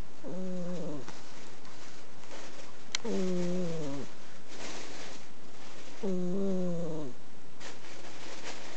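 An Exotic Shorthair cat snoring in her sleep: three pitched snores of about a second each, roughly three seconds apart, each sagging in pitch at the end. The breed's flat face and short airway give the snore its tone.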